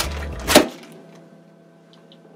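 A single sharp crack about half a second in, as a low background sound cuts off; then quiet room tone with a faint steady hum.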